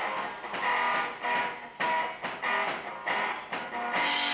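Music led by a strummed guitar, a new chord struck about every half second.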